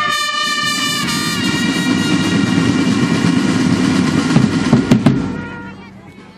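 Marching drum band: a held brass chord fades about a second in while the snare and bass drums play a loud, dense roll. The roll ends with a few hard strikes around five seconds in, then the sound falls away.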